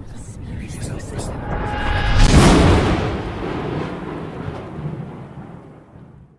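Logo intro sound effect: a swell of deep, dense noise that builds to a peak about two and a half seconds in and then fades away, with a few faint steady tones riding on it just before the peak.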